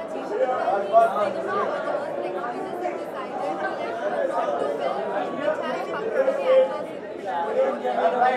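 Indistinct chatter of several people talking at once, with no clear single voice.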